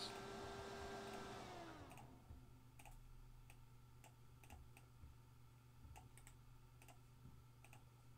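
Faint computer mouse clicks, about a dozen short clicks at irregular spacing, as a button on a web page is pressed repeatedly and text is selected. A fading hiss fills the first two seconds, and a faint steady low hum runs underneath.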